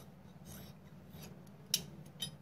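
Large metal tailoring scissors cutting through folded fabric: quiet snipping and rubbing of the blades through the cloth, with one sharp click near the end.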